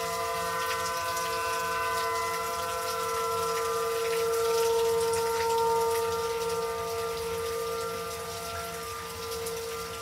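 Outdoor tornado warning sirens sounding a steady held tone, swelling louder about halfway through, over the hiss of rain.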